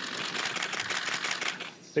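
Many camera shutters firing in rapid, overlapping bursts as press photographers shoot a posed handshake; the clicking dies away near the end.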